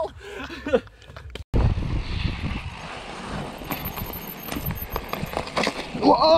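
A few words in the first second, then a sudden break and a mountain bike ridden fast down a forest trail, heard from a camera on the rider: steady rumbling noise of tyres on dirt and wind on the microphone, with the bike knocking and rattling over bumps and roots.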